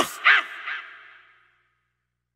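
The rapped vocal's last word, unaccompanied, repeated twice by a fading echo effect. It trails off to silence about one and a half seconds in as the track ends.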